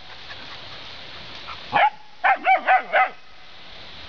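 Puppy barking: one rising yelp a little under two seconds in, then a quick run of four high-pitched yaps.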